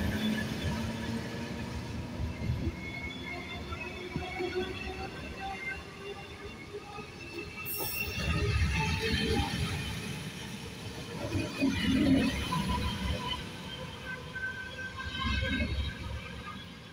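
Passenger coaches rolling slowly past on a curve, the wheels rumbling and knocking in groups as the bogies pass, with thin high wheel squeal coming and going.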